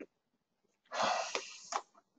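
A person's breath near the microphone: after a near-silent first second, one noisy breathy exhale that fades within a second.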